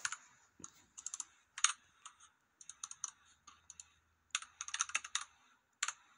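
Faint keyboard typing: quick clicks of keys in short irregular runs, the longest and densest run about four and a half seconds in.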